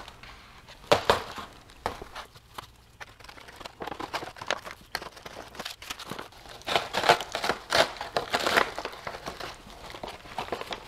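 7 mil Mylar bag crinkling in irregular bursts as a chunk of freeze-dried pulled pork is pressed down into it, with one burst about a second in and a busier run of crinkles late on.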